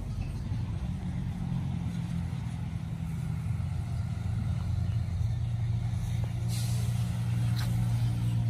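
A road vehicle's engine running with a steady low hum that slowly grows louder, with a short hiss about six and a half seconds in.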